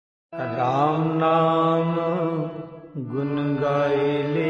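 Devotional kirtan music starts abruptly after a moment of silence: a sustained, wavering sung melodic line that dips briefly about three seconds in, then carries on.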